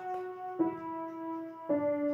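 Yamaha piano playing the last notes of a descending D major scale, right hand: F-sharp ringing, then E struck about half a second in and the low D near the end, each note held so the scale steps down evenly.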